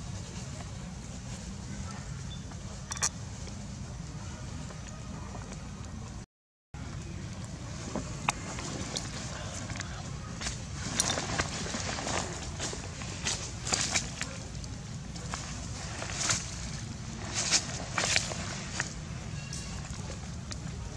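Dry leaf litter crackling and rustling in a series of sharp clicks as monkeys move on it, over a steady low rumble. The sound drops out for a moment about six seconds in, and the crackling gathers after that.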